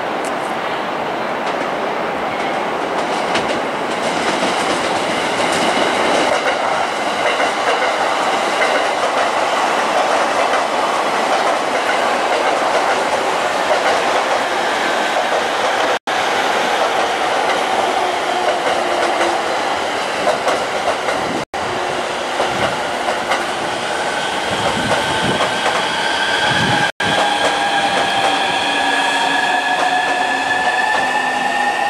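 Electric commuter trains running through station tracks: a steady rumble and clatter of wheels with clickety-clack over the rail joints. From about two-thirds of the way in, the several-toned whine of an electric train's motors rises slowly as it accelerates away. The sound cuts out for an instant three times.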